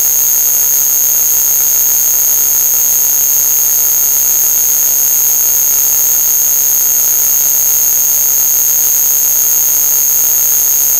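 A loud, unchanging electronic noise: a harsh hiss with two piercing high steady tones, like a synthesized alarm drone.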